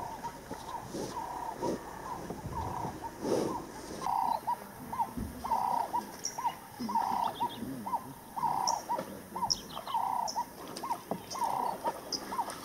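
A bird repeating a short call about twice a second, with sparse higher chirps of other birds over it.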